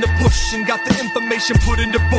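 Hip hop music: a beat with deep bass hits repeating about twice a second, under rapped vocals.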